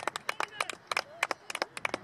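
Scattered hand claps from a few spectators, several sharp claps a second at an uneven rhythm, with faint voices underneath.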